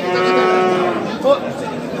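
One of the cattle mooing once, a steady call about a second long that fades away.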